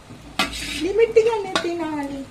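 Steel ladle stirring and scraping through cooked biryani in a steel pot, with two sharp clinks against the pot, about half a second and a second and a half in. A voice hums a wordless tune over it.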